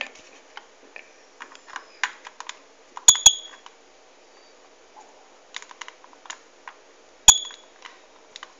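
Switch on a power extension strip being pressed: a sharp double click about three seconds in and another click near the end, each with a brief high ring, amid faint handling ticks.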